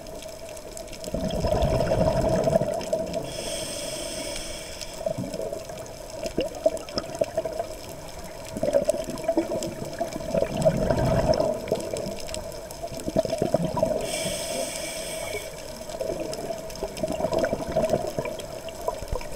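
Scuba diver breathing through a regulator, heard underwater: two long bursts of exhaled bubbles, about a second in and again around nine seconds, each followed by a hissing inhale, over a steady hum.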